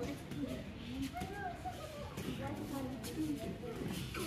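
Indistinct background talk from several people, with a few faint knocks.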